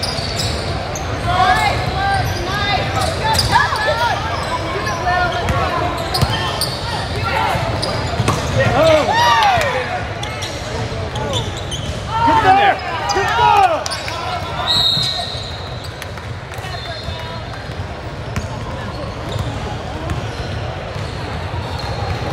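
Basketball game in a large echoing gym: a ball bouncing and sneakers squeaking on the hardwood court, with runs of squeaks loudest around the middle, over steady background voices.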